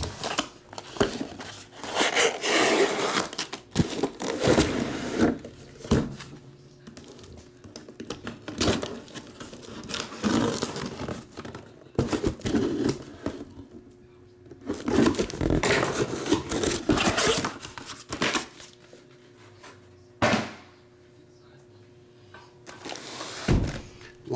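A cardboard shipping box being opened and unpacked by hand: rustling and scraping of cardboard and packing tape, broken by thunks as boxed items are set down on the table. The handling comes in bursts, with a quiet stretch near the end.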